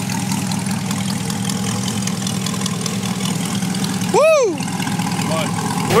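2020 C8 Corvette's 6.2-litre V8, fitted with sport cats and a Soul Performance cat-back exhaust, idling steadily. A brief rising-and-falling whoop cuts in about four seconds in.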